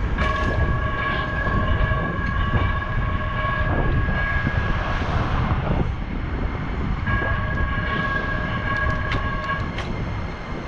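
Wind rushing over the camera microphone of a moving bicycle. Over it, a steady high squeal made of several pitches lasts about five seconds, stops, then comes back for about three seconds near the end.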